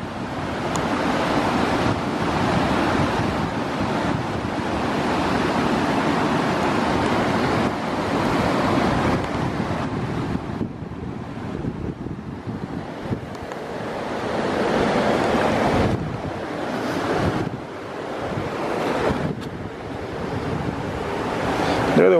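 A loud, steady rushing noise with no distinct events, swelling and easing every few seconds and dropping away briefly about halfway through.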